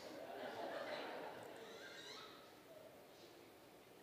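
Faint laughter and murmuring from a congregation, fading away about two seconds in, then near silence.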